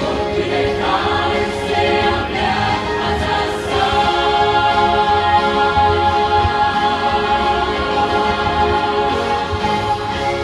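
A large choir singing, heard from the audience in a big hall, with many voices building into one long held chord from about four seconds in.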